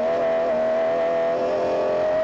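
Engine of a BMW M3-engined Land Rover off-road race truck at steady high revs, heard from inside the cockpit, its pitch holding nearly level.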